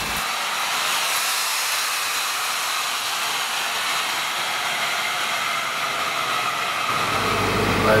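Steady rushing noise with almost no deep sound in it.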